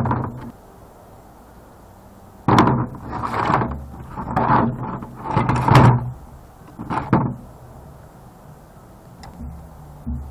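Hard plastic and wire scrap from a CRT monitor's deflection yoke being handled and pulled apart on a table. There is a sharp knock at the start, then about two and a half seconds in comes a run of scraping and clattering that lasts some five seconds.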